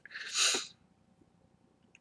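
A man's short, sharp breath of air, about half a second long, swelling and fading without any voice in it.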